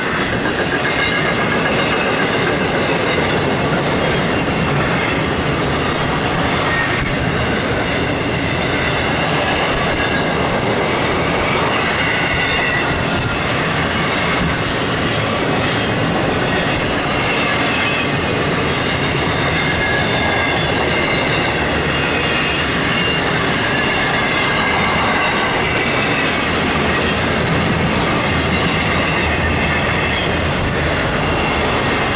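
Intermodal freight train's flatcars, loaded with truck trailers and containers, rolling past with a steady rumble of wheels on rail. High-pitched wheel squeal wavers on and off above it.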